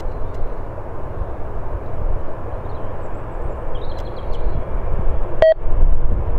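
Jet engine noise from a Boeing 787 Dreamliner rolling out on the runway after touchdown, a steady rumble that grows louder near the end, with wind rumbling on the microphone. A short electronic beep sounds about five and a half seconds in.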